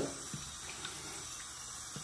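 Kitchen faucet running steadily, water splashing into the sink as hands are washed.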